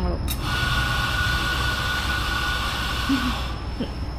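A click, then a steady mechanical hissing whir with a thin high whine for about three seconds, cutting off suddenly.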